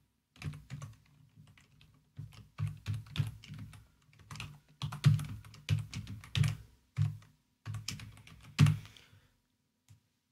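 Typing on a computer keyboard: runs of keystrokes with short pauses between them, stopping about a second before the end.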